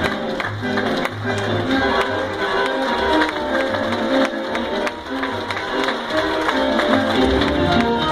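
Live tango orchestra with strings and double bass playing with a clear, steady beat.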